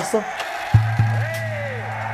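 Edited background music: a low sustained bass note comes in sharply about three-quarters of a second in and holds, with a higher tone swooping up and back down over it.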